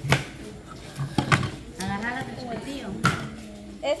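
Kitchen knife cutting carrots on a plastic cutting board: a few sharp knocks of the blade on the board, with voices in the background.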